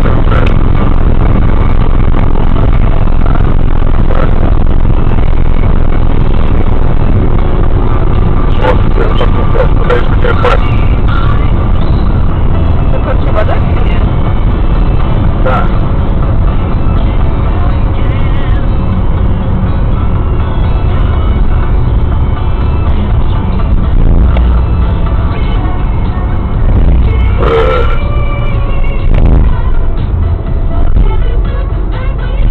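Loud steady road and engine noise inside a car's cabin at motorway speed, with a radio playing music and voices over it.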